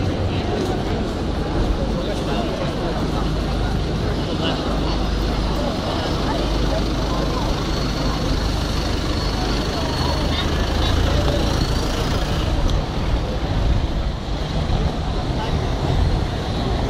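Busy city street ambience: road traffic running steadily, with voices of passers-by talking in the background.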